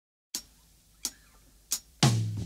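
Three sharp clicks, evenly spaced about two-thirds of a second apart, with near silence between them.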